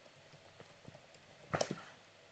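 Faint typing on a computer keyboard: scattered soft key clicks, with a louder cluster of keystrokes about one and a half seconds in.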